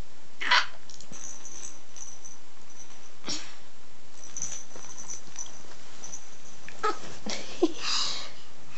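Baby of seven to eight months making short, high-pitched squeals, falling in pitch, a few seconds apart.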